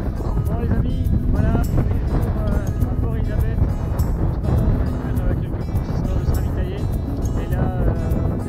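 Wind buffeting the microphone, a loud, constant low rumble, with a man talking through it and background music.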